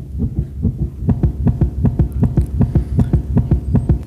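A fast, even low thumping, about five beats a second, from a played video's soundtrack coming over the hall's speakers.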